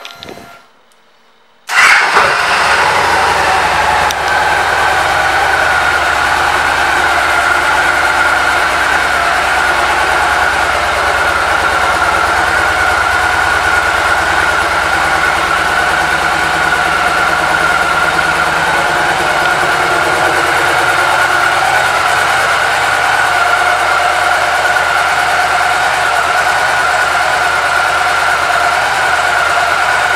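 A 2013 Victory Cross Country Tour's Freedom 106 V-twin starts about two seconds in, then idles steadily.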